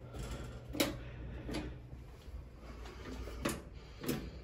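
Three faint clicks, spaced irregularly, as the push button of a stainless steel drinking fountain is pressed, with no water coming out: the fountain is dry.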